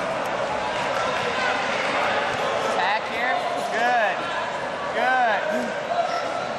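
Wrestling shoes squeaking on the mat: short squeals that rise and fall in pitch, several times in the second half, over the steady din of a busy sports hall with voices.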